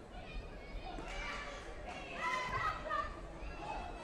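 High-pitched raised voices echoing in a large sports hall over a background din of chatter, loudest about halfway through.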